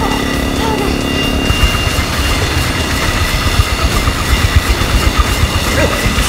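Motorcycle engine running hard with a dense, rapid low rumble as it drives a spinning blade trap.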